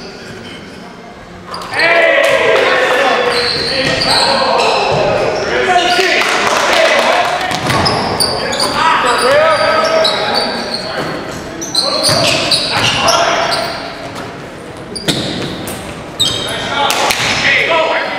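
A basketball bouncing on a hardwood gym floor during play, echoing in a large hall, with players' voices calling out on the court.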